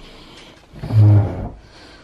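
A short, low, steady hum or grunt from a person's voice, about a second in, like a wordless 'mm'.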